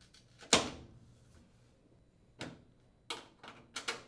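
Metal spring clips being pushed into the slots of a washer's top panel to secure the cabinet: one sharp snap about half a second in, then a few lighter clicks near the end.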